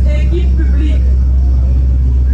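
A woman's voice through a handheld microphone, a few short phrases in the first second and then a pause, over a loud steady low hum.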